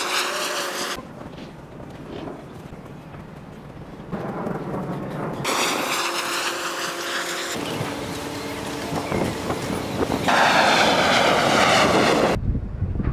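Aircraft noise from overhead, a steady rushing sound with a low hum, heard in three louder stretches that start and stop abruptly at edits. Quieter outdoor background lies between them, and the loudest stretch comes near the end.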